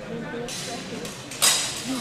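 Voices talking, echoing in a large sports hall, with one sudden loud, sharp, hissy sound about a second and a half in.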